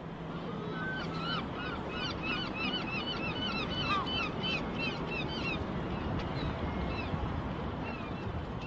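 Birds calling: a rapid run of short, arched cries, several a second, that thins out after about five seconds, over a steady outdoor background hum.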